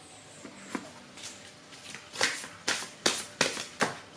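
Tarot cards being handled: a string of short snaps and rustles, coming closer together in the second half, as a card is drawn from the deck and set down on the table.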